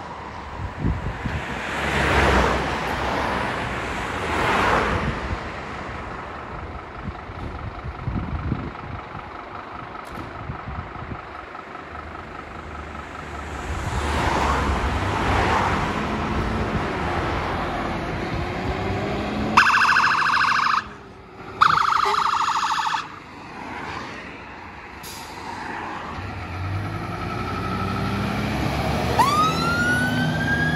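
Fire engine turning out: two short bursts of a fast-warbling phaser siren about two-thirds of the way through, then a siren wail beginning to rise near the end, over the Scania pump's diesel engine pulling out. Road traffic passes in the first half.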